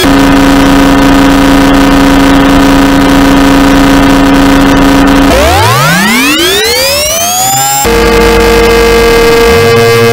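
Korg synthesizer playing a loud, harsh electronic drone: one held note rich in buzzy overtones. About five seconds in it sweeps steeply upward in pitch, then settles on a new held, higher note.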